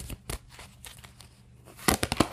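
Tarot cards being handled as a card is pulled from the deck: faint rustling and a few light clicks, then a sharp snap of card stock near the end.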